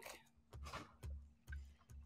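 Faint clicks and a few soft, low knocks from hands handling craft supplies on a desk.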